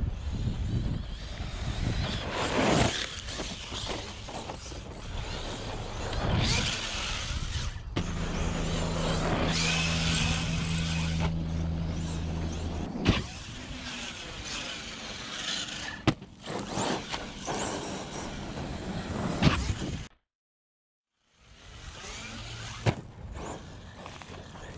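Electric 1/8-scale Arrma Kraton EXB RC truck being driven hard: a motor whine that rises and falls with the throttle over tyre and dirt noise, with several sharp knocks from landings and hits. The sound cuts out for about a second near the end.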